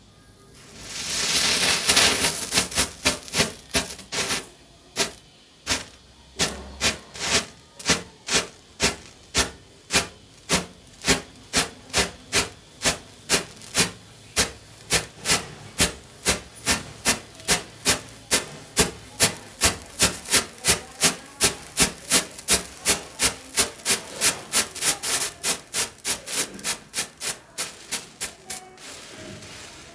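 Matchstick heads flaring one after another along a burning domino chain of matches: a hiss of burning at first, then an even run of short fizzing flares, about two a second.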